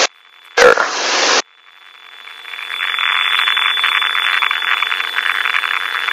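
Crackling hiss of radio static in the aircraft's headset audio, swelling over about a second and a half and then holding steady, with a faint high steady whistle running through it.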